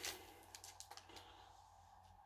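A few faint clicks and crinkles of a chocolate bar's wrapper being handled, in the first second or so.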